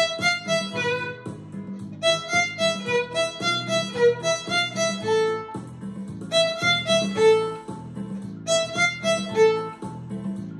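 Violin playing a lively, energetic beginner tune that keeps moving without a break: a quick run of short bowed notes, with a few longer held notes along the way.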